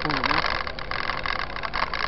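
Mountain bikes rolling over an unpaved dirt track: a steady noise of tyres and rattling, dense with small clicks. A voice is heard briefly at the start.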